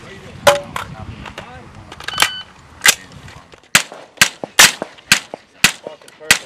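Suppressed rifle firing a string of about eight single shots, irregularly spaced and coming faster in the second half, during a timed course of fire.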